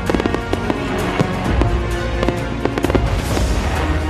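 Fireworks going off in a run of sharp bangs and crackles, several a second, with music playing under them.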